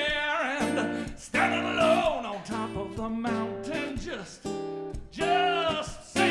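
A man singing a live song to his own acoustic guitar, holding long notes that slide up and down in pitch over sustained guitar chords.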